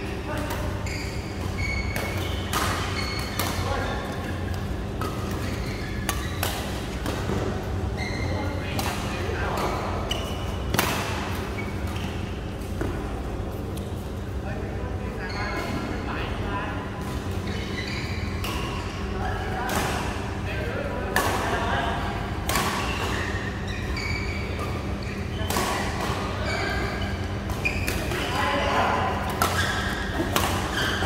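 Badminton rackets striking a shuttlecock again and again in sharp cracks during doubles rallies, with shoes squeaking on the court floor, echoing in a large hall.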